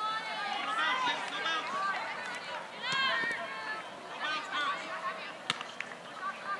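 Several high-pitched voices shouting and calling out across an open soccer field, overlapping and at a distance, with one sharp knock about five and a half seconds in.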